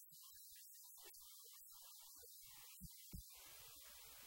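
Near silence: faint recording hiss with scattered faint low rumble and two soft low thumps about three seconds in.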